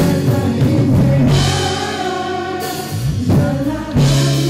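A pop-rock song playing, with sung vocals over a band with drums and guitar.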